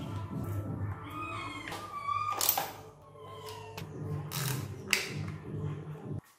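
Sharp metal clicks and knocks of a wrench on the front brake caliper bolts of a motorcycle, over a steady low hum, with short high gliding calls like a cat's meow about a second and a half in and again near the end.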